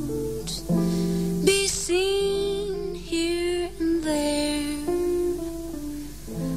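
A 1950s jazz vocal recording playing: a slow song with guitar accompaniment under a female singer's sustained notes.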